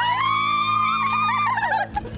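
A woman's long, high-pitched squeal of excitement, held and then wavering before it breaks off near the end, over a background music bed.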